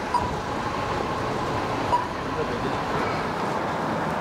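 Steady city street traffic noise, an even background rush.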